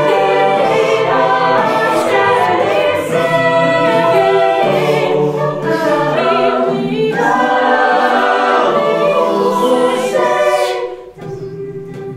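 A cappella group singing in close harmony, with a female lead voice and vocal percussion. Near the end the sound drops away sharply, then the singing carries on more softly.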